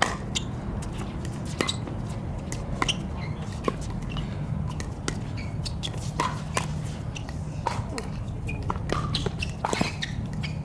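Pickleball paddles striking a hard plastic ball in a doubles rally: sharp pops about a second apart, coming faster near the end, over a steady low rumble.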